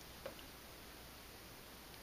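Near silence: room tone, with one faint brief click about a quarter second in.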